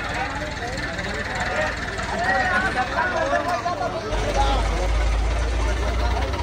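Men's voices calling out, joined about four seconds in by the steady low rumble of a truck-mounted crane's diesel engine working as it hoists a heavy load.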